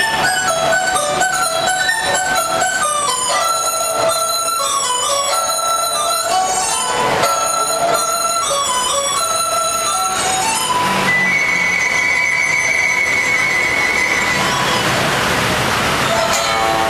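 Traditional Chinese instruments, which the performers list as bamboo flute (dizi) and pipa, playing a stepping melody for about ten seconds. Near the end the melody gives way to one long, high held note over a rushing noise.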